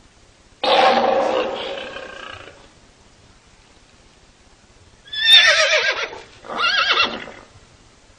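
Three loud animal-like calls with a wavering pitch. The first comes about half a second in and fades over two seconds; the other two follow close together past the middle.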